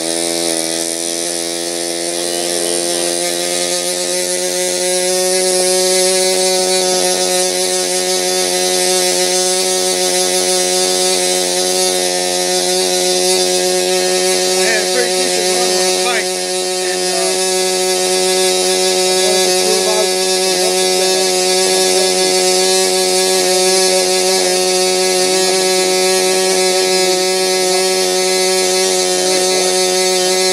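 Control-line model airplane's two-stroke glow engine running steadily at high revs, an even, unbroken drone.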